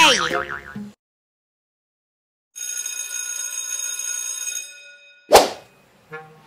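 Added editing sound effects. A steady, bright ringing tone with many overtones plays for about two seconds and fades away. Near the end comes a single short, loud effect that sweeps quickly down in pitch.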